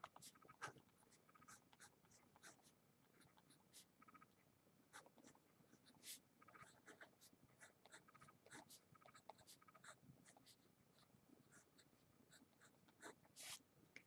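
Faint scratching of a pen writing on paper, in many short strokes, barely above near silence.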